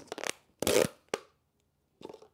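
A thin clear plastic cup crackling as it is gripped and handled. A short crackle comes first, then a louder one just over half a second in, then a sharp click about a second in.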